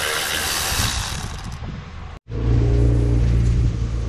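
Cordless electric ratchet running for about a second and a half, undoing a T30 bolt on the inlet manifold, heard as an even hiss. After a sudden break, a louder steady low hum takes over.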